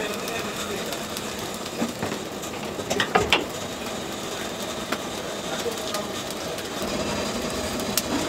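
Steady mechanical background noise with a few sharp clicks and clinks, the loudest cluster about three seconds in.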